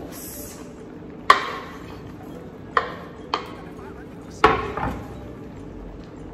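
A metal spoon knocking against a wooden cutting board and a stainless steel frying pan as sliced sweet pepper is scraped into the pan and stirred in: four sharp clacks, the last one ringing briefly.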